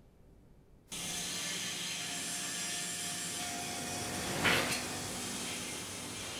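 Heavy-engineering factory shop floor noise that starts suddenly about a second in: a steady machinery hum with a faint held tone, and a brief louder noise about four and a half seconds in.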